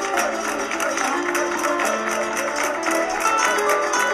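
Background music with a melody of quick plucked notes.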